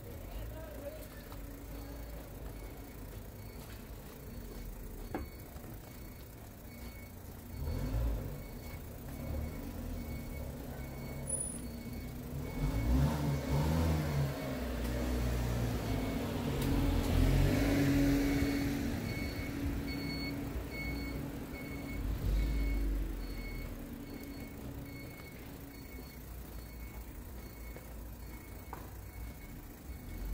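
A garage-exit warning beeper sounds a steady run of short high beeps while a pickup truck's engine drives out across the sidewalk. The engine sound swells to its loudest a little past the middle and then fades.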